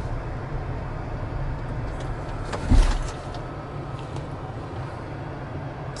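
Steady low road and engine rumble inside a moving car's cabin, with one short thump a little under three seconds in.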